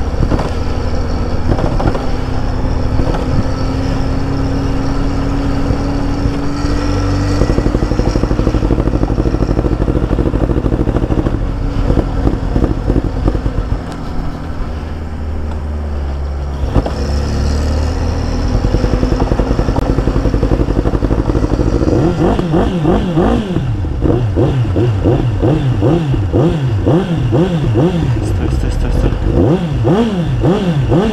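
Motorcycle being tow-started in gear behind a car: a steady rumble of engine and road noise, then from about two-thirds of the way in, the motorcycle's engine is running and being revved up and down over and over, about once a second. The engine is flooded with fuel.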